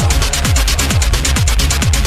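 Electronic dance music from an EBM/industrial mix: a kick drum that drops in pitch on every beat, a little over two a second, under fast steady hi-hat ticks and a deep bass.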